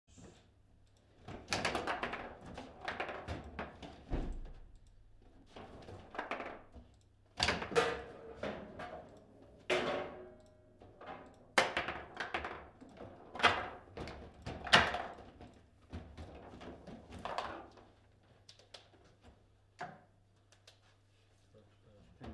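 Table football (foosball) table in play: the ball and the rods knocking against the plastic players and the table's sides, a string of sharp knocks and thuds at uneven intervals.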